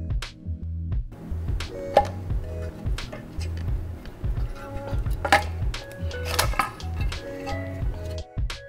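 Background music with a steady beat and repeating bass line, with a few sharp clinks over it about two, five and six seconds in.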